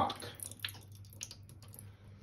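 Thin stream of bean packing liquid poured from a carton into a stainless steel sink, trickling faintly with a few small drip ticks.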